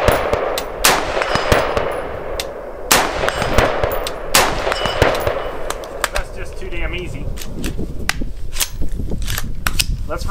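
Bear Creek Arsenal M4-style AR-15 rifle fired single shots from a rest, four sharp cracks one to two seconds apart in the first half, each with a short echo. Only fainter clicks follow in the second half.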